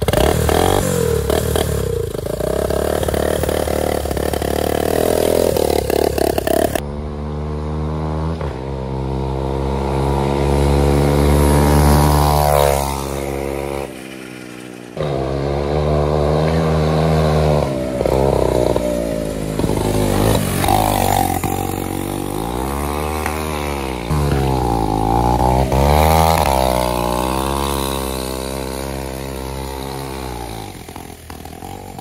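Shopping-cart go-kart's rear-mounted engine running under way, its pitch rising and falling again and again as the throttle is worked. The sound changes abruptly about seven seconds in and drops out briefly around fourteen seconds.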